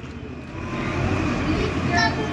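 Small wheels of a toddler's plastic ride-on toy and a training-wheel bicycle rolling over rough concrete: a low rumble that builds about half a second in and keeps on.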